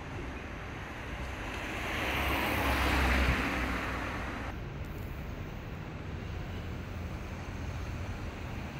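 City street traffic: a vehicle passes, swelling and fading about two to three seconds in. The sound then changes abruptly to a steadier traffic hum.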